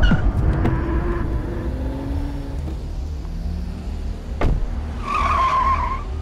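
A car's engine running low as it drives in, a sharp click about four and a half seconds in, then a tire squeal near the end as it brakes hard.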